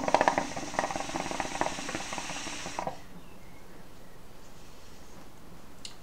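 Shisha (hookah) water bubbling rapidly as smoke is drawn through the hose. It lasts about three seconds, then stops.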